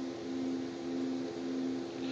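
Steady low machine hum, two even tones over a soft hiss, with no clicks or other events.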